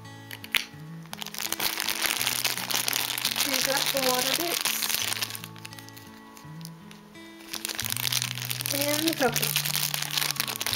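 Clear plastic bag crinkling loudly as it is handled and opened, in two long stretches, over background music. A sharp click about half a second in.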